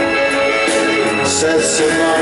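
A live rock band with trombones and electric guitar plays an instrumental passage with held brass notes, heard loud from the festival crowd.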